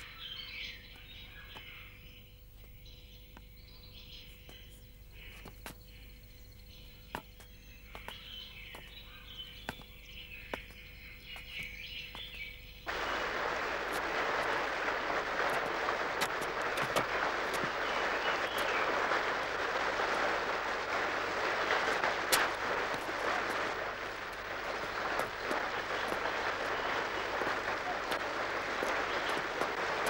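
Forest ambience with bird calls and a few sharp clicks, then, a little before halfway, an abrupt switch to the loud, steady rush of a waterfall and stream pouring over rocks.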